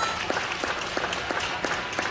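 Spectators applauding a won point in a badminton match, a steady patter of many hands clapping.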